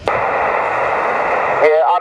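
Steady hiss from a small Yaesu transceiver's loudspeaker, receiving on 2 m SSB with no signal: the narrow receive filter gives an even, muffled rush with no high end. A distant station's voice breaks through the hiss near the end.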